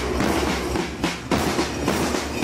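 Marching-band snare and bass drums beating a steady march rhythm, about two to three strokes a second.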